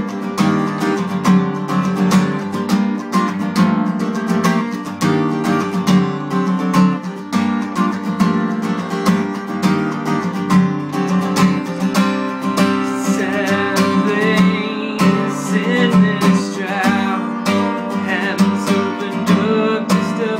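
Acoustic guitar strummed in a steady rhythm.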